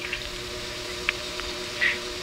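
Steady hum of several low tones over a faint hiss on a recorded telephone line, with two faint short blips about a second in and near the end.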